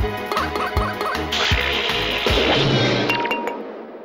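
Cartoon background music with a driving drum beat and a few short squeaky blips. About a second in it gives way to a rushing hiss that fades out, with a few light clinks near the end.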